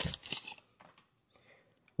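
Booster pack wrapper crinkling as the cards are pulled out of the opened pack: a few short crackles in the first half second, then near silence.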